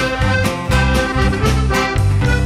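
Button accordion playing a folk tune, backed by a band of guitar, bass, keyboard and drums keeping a steady beat of about four strokes a second.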